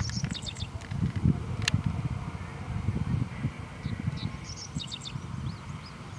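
Birds chirping in short bursts near the start and again near the end, over a low gusty rumble, with one sharp pop about a second and a half in.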